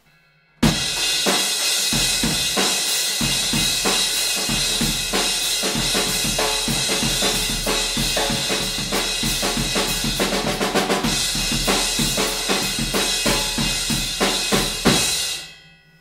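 Drum kit groove with a crash cymbal ridden in steady straight strokes over kick and snare, the continuous crash wash giving a loud, aggressive wall of sound typical of rock and alternative music. It starts about half a second in and stops near the end, the cymbal ringing out.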